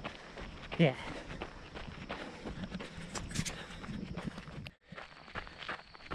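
A runner's footsteps on a gravel trail, a steady run of short crunching strides, with a brief cut-out near the end.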